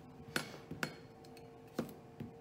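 Kitchen knife cutting a cucumber, the blade knocking sharply on the cutting board three times: two quick cuts close together, then one more about a second later.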